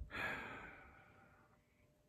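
A man's soft sigh: one breath out that starts at once and fades away over about a second and a half.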